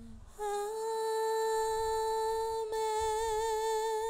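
A single voice sings one long held note, the sung response that closes the priest's chanted blessing. The note breaks briefly about two and a half seconds in, then carries on with a slight vibrato.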